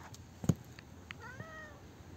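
Tabby cat giving one short meow, rising at its start, a little past a second in. A sharp knock about half a second in is the loudest sound, with a few lighter clicks after it.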